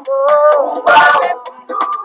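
Singing: a voice holding and bending sung notes, with a short break near the end.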